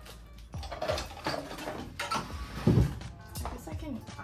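Items being handled and set down while a plant cabinet is rearranged: a series of sharp knocks and clinks, with a heavier thump near three seconds in, over background music.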